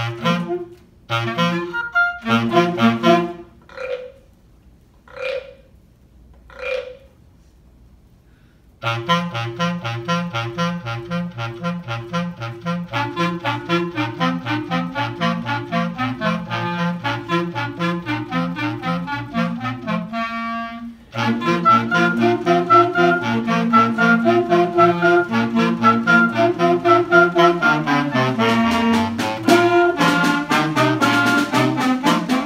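Small student woodwind ensemble of saxophones and clarinets playing: a few short separate notes over the first eight seconds, then a steady, rhythmic passage of repeated notes. It breaks off briefly about twenty seconds in and comes back louder.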